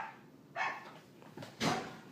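Pet dogs barking in the house: three short barks spread over two seconds.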